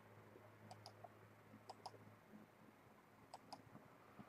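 Faint clicks from a computer mouse: three quick double-clicks, about a second apart. A low hum in the background stops about halfway through.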